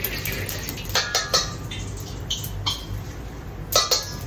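Metal ladle clinking and scraping against a carbon-steel wok of hot oil on a gas wok burner: several sharp clinks with short ringing and a few brief squeaks, the loudest clanks near the end as the wok is lifted off. A steady low hum from the burner runs underneath.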